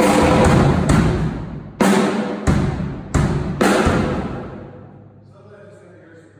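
Ludwig drum kit struck in loud accented hits, cymbal crashes together with drums, about six of them less than a second apart; the last crash rings out and fades over about two seconds.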